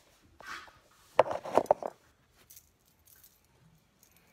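A quick run of clinks and knocks from small hard objects being handled, a little over a second in, after a soft rustle. A few faint ticks follow.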